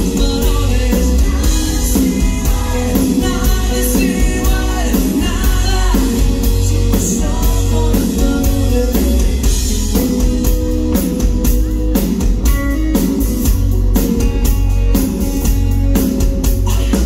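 Live rock band: a male singer sings over electric guitar and drums, with a steady drum beat.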